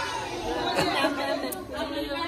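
Schoolchildren chattering, many voices talking over one another at once.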